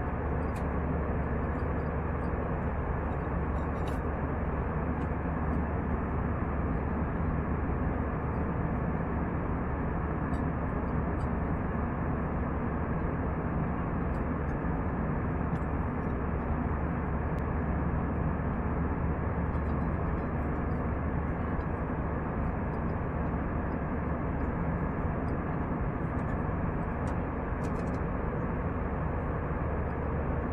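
Steady cabin noise of an Airbus A320 in flight, heard from a window seat beside the engine: an even rush of engines and airflow over a deep low hum, unchanging throughout.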